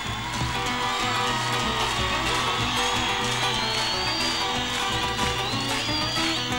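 Acoustic guitars playing an instrumental passage of an Argentine folk song, live, with no singing.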